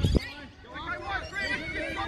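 Scattered high-pitched shouts and calls from several voices, no clear words, with a short low thump at the very start.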